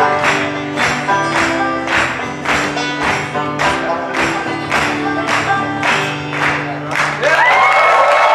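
Acoustic guitar and banjo playing a song over a steady percussion beat, which ends about seven seconds in as the audience breaks into applause and cheering.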